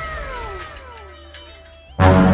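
A soundtrack effect: a tone sliding steadily down in pitch for about a second and a half while fading, with a steady higher note under it that steps up near the end.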